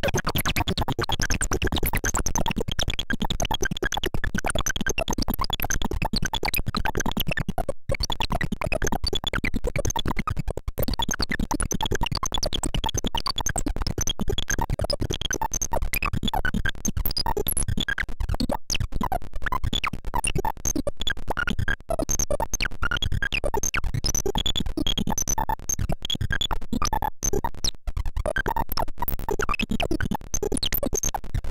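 Homemade breadboard CMOS synthesizer built around a CD4023 pulse-width-modulation oscillator, putting out a dense, glitchy electronic buzz of rapid clicking pulses that shift as its knobs are turned, with a few brief cut-outs.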